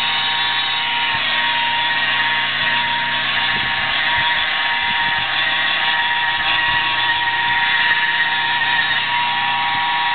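Handheld electric polisher with a foam pad running steadily against a truck's painted door, a constant motor whine with the pad's rubbing noise.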